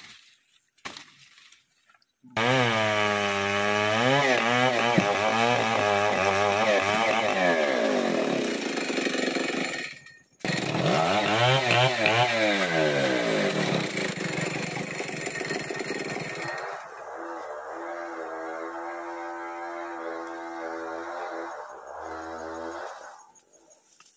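Two-stroke chainsaw cutting into a felled kayu bawang log. It starts a couple of seconds in, its engine pitch dipping and climbing as the chain bites, and it cuts out briefly about ten seconds in. It then resumes and drops to a quieter, steadier note before stopping near the end.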